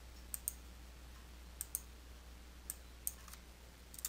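Faint, sharp clicks of a computer mouse button, four times in just over three seconds. Most come as a quick press-and-release pair.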